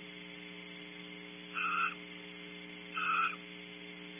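Barn owl giving two short calls about a second and a half apart, over a steady electrical hum.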